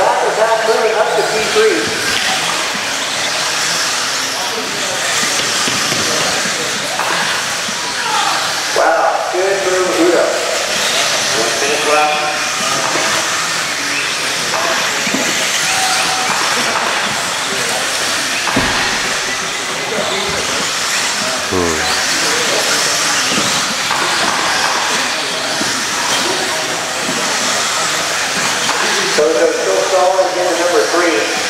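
Electric 1/10-scale RC buggies of the 17.5-turn brushless class racing on a dirt track: a steady hiss of motors and tyres on dirt, with an occasional brief rising whine. Indistinct voices come in at times.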